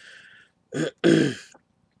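A man clearing his throat in two pushes about a second in, a short one and then a longer, louder one.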